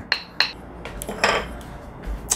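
Marble pestle knocking a few times against a marble mortar, with a short grinding scrape a little after a second in, as garlic and chili peppers are mashed.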